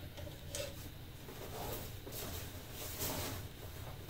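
Hands rummaging in a fabric bag of tower-climbing gear: faint rustling with a few light clicks.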